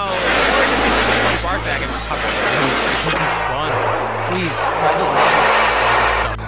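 Harsh, distorted noise over a steady low hum, with garbled fragments of a voice buried in it.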